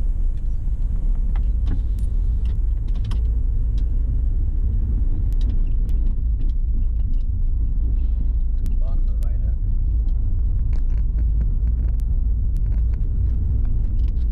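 Steady low rumble of a car's engine and tyres heard from inside the cabin while driving slowly on city streets.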